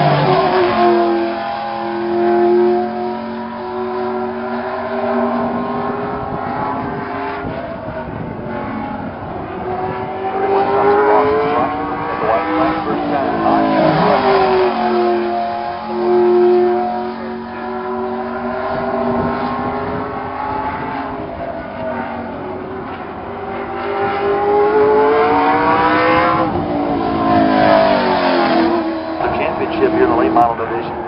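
A stock car's V8 engine running laps on a short oval track, heard from the stands. It comes by about every 13 to 14 seconds, and the pitch swoops down each time it passes, then settles into a steady drone down the far side.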